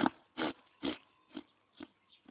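Donkey breathing hard close up: a run of short, breathy puffs about two a second, getting fainter.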